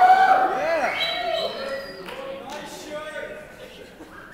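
A person's voice making a run of quick rising-and-falling whoops, loudest in the first second, then trailing off into a few fainter held vocal tones.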